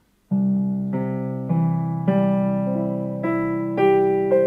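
Piano playing a low C and then a broken C chord, one note at a time, with a new note about every half second. The sustain pedal is held down, so the notes ring on over one another.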